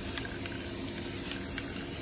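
Aerosol spray paint can hissing steadily as its nozzle is held down, spraying paint without a break.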